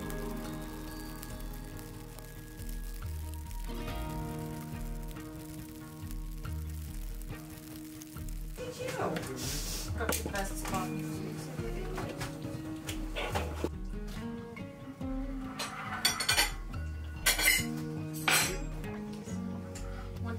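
Background music with a slow beat. From about halfway, metal pots and utensils clink on a gas stove as food is stirred, with a few sharper clinks near the end.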